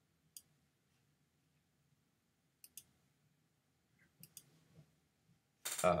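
Faint, sharp computer clicks: one, then two quick pairs, as the display is switched over to a slide presentation. A man's voice says "all right" right at the end.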